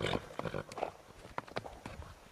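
Saddled horses standing in a shed, with faint, irregular knocks and clicks from hooves shifting on the hard floor and tack shifting.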